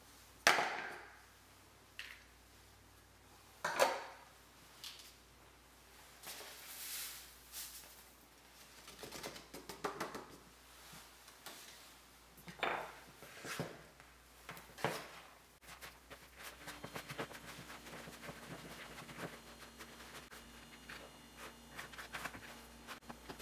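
Kitchen utensils and measuring cups clacking against a plastic food-processor bowl and the countertop as herbs and spices are tipped in: a series of separate sharp knocks, the loudest about half a second and about four seconds in. From about 16 seconds on, a spoon stirs a coarse, wet chickpea mixture in a plastic bowl, giving a steady run of small scrapes and clicks.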